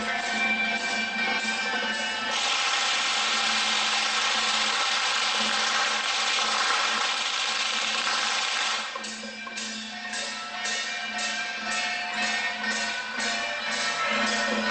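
A traditional Taiwanese temple-procession percussion band of gongs, hand cymbals and drum beating a steady rhythm of about three strokes a second over a sustained melody. From about two seconds in to about nine seconds the strokes merge into a dense, continuous crashing, then the steady beat returns.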